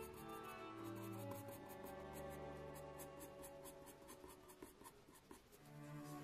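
Soft graphite sketching pencil scratching across sketch paper in a quick run of short, faint strokes as fur texture is shaded in. Soft background music with held notes plays underneath.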